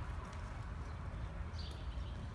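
Hoofbeats of a horse moving over a soft dirt arena floor, against a steady low rumble.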